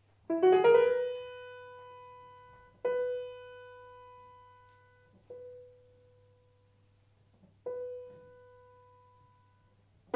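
Grand piano played slowly: a quick rising run of notes ending on a held note, then the same note struck three more times a couple of seconds apart, each left to ring and fade. Denser playing starts right at the end.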